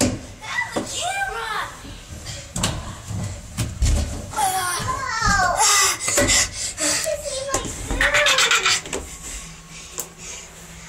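Children's voices calling out and squealing with high, sliding pitches, mixed with knocks and bumps as a child crawls through a plastic play-structure tube.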